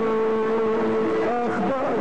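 Kurdish maqam music performed live by a singer with a violin ensemble: one long held note that steps up to a higher pitch about one and a half seconds in, then wavers back down near the end.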